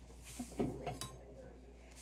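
A few faint metallic clinks of cutlery as a kitchen knife is picked up and handled, clustered in the first second.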